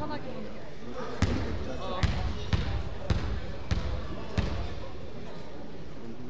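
A basketball dribbled on a hardwood gym floor, six bounces a little over half a second apart, as a player readies a free throw, each bounce ringing briefly in the hall.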